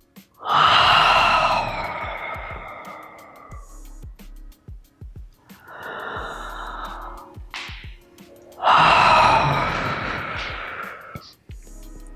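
A woman breathing audibly through an open mouth during a breathing exercise. A loud, sighing out-breath starts suddenly about half a second in and fades over a few seconds, a quieter in-breath follows around six seconds, and a second loud out-breath comes about nine seconds in.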